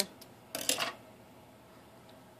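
Scissors snipping through a tail of crochet yarn: a short, crisp metallic cut about half a second in, after a faint click.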